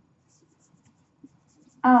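Marker pen stroking across a whiteboard in a few short, faint squeaks as an arrow and a word are written.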